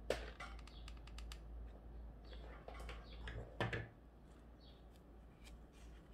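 Faint rustling and small clicks of fingers handling a ribbon hair bow: a quick run of light clicks in the first second or so, a louder rustle about three seconds in, then quieter handling.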